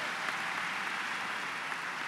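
Audience applauding steadily, an even patter of many hands with no voices over it.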